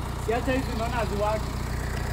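A BMW car's engine idling steadily, a low even hum, with faint voices in the background.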